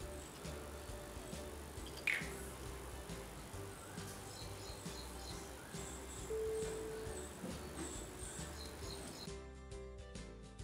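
Quiet background music. Near the end it cuts abruptly to a different track with a steady beat.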